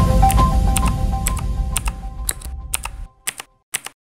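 Intro music fading away over about three seconds, with keyboard-typing clicks about twice a second that carry on alone once the music has gone. The clicks are a typing sound effect.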